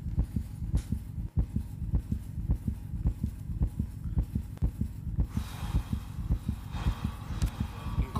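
Dramatic suspense sound effect on a TV soundtrack: a fast, even pulse of deep thuds, with a hiss swelling in about five seconds in, building tension before a reveal.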